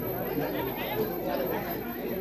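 Indistinct background chatter of several people talking.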